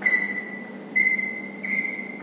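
Chalk squeaking against a chalkboard while writing: three high, steady squeals, one at the start, one about a second in and one shortly before the end.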